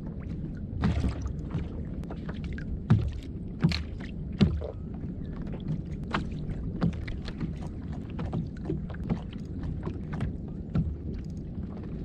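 Sea water lapping against a fishing kayak's hull over a steady low rumble, with scattered sharp knocks, the loudest about three and four and a half seconds in.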